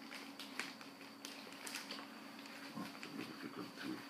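Faint rustling and light knocks of vinyl record sleeves being handled, irregular short clicks over a steady electrical hum.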